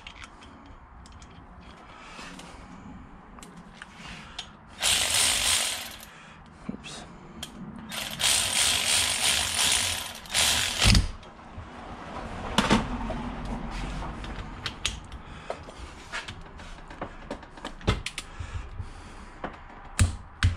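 Milwaukee 3/8-inch cordless ratchet running ring gear bolts into a differential carrier, in two bursts: one of about a second about five seconds in, and a longer one of about three seconds from about eight seconds in. Metallic clicks and knocks of the bolts and parts being handled come between and after.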